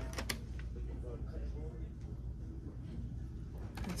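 Store room tone: a steady low hum with faint voices in the background, and a sharp click just after the start.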